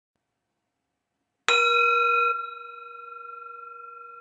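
Metal singing bowl struck once, giving a ringing tone with several pitches over a low hum. It is loud for under a second, then drops and rings on softly, slowly fading.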